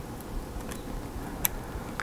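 Quiet handling sounds of a utility knife cutting into a soft-plastic swimbait: a few faint clicks, then one sharp click about a second and a half in.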